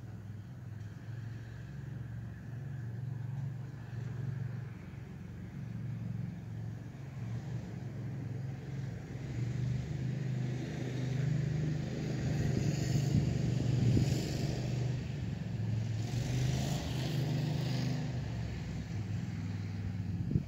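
Landmaster LM650 utility vehicle's 653cc engine running while the vehicle stands still, its steady note growing louder through the first half as the revs come up a little. Two stretches of hiss ride on top, in the middle and near the end.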